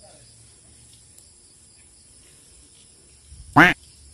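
A single short, loud call about three and a half seconds in, its pitch arching up and down over about a quarter second, over a faint steady high hiss.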